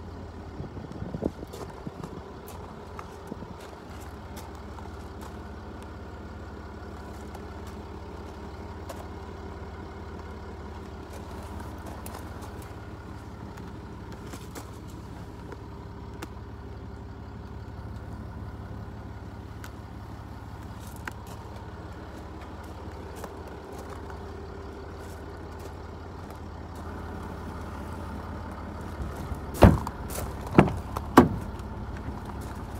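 Jaguar XF's 3.0 V6 turbodiesel engine idling with a steady low hum. Near the end comes a loud thump, a car door being shut.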